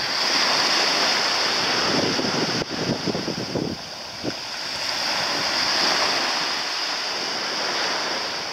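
Wind buffeting the microphone over the wash of small waves in shallow sea water. It is a steady rushing noise that swells, eases about halfway through, and swells again.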